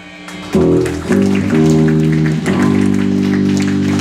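Live rock band's amplified electric guitar and bass, loud, ringing out long held chords that change a few times, after a brief lull at the start.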